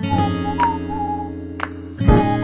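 Background music: a whistled tune over strummed acoustic guitar chords.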